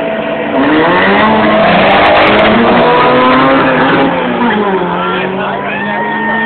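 Turbocharged Volkswagen Gacel accelerating hard from a standing start in a street drag race, the engine's pitch rising, dropping back at gear changes and climbing again. Loud, with voices shouting over it.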